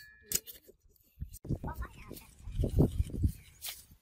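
A person's voice talking for about two seconds in the middle, with a single sharp click near the end.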